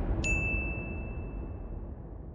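A single bright notification-bell 'ding' sound effect about a quarter-second in, ringing on one high tone and dying away over about a second and a half. It sits over an outro music bed that is fading out.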